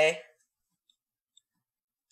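A man's word trails off, then near silence with two faint ticks about half a second apart.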